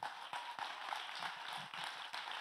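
Congregation applauding, quiet and steady.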